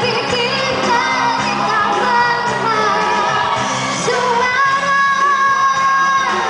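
A young girl singing a pop song into a microphone over a recorded backing track. She holds one long note near the end.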